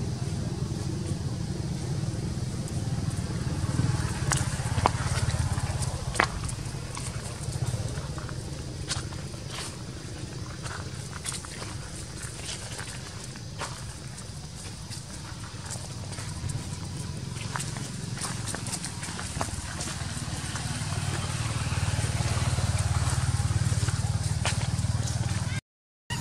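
Dry fallen leaves crunching and crackling in scattered sharp clicks under walking macaques, over a steady low rumble.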